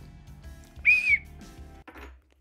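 A single short, high whistle blast about a second in, over quiet background music.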